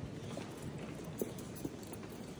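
Footsteps on a stone floor: a few sharp clicks over a steady low background hum.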